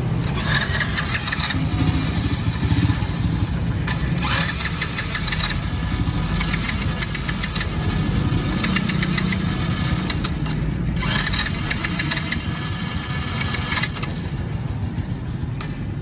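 Small single-cylinder engine of a 1998 Honda step-through motorbike idling steadily and very smoothly, with stretches of lighter, higher-pitched mechanical clatter coming and going.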